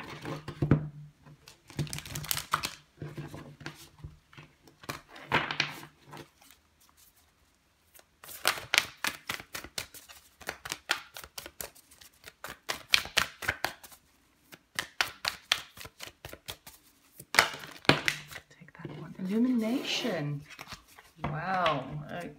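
Deck of oracle cards being shuffled by hand: soft slaps and rustles of cards, a brief pause about seven seconds in, then fast runs of crisp card clicks.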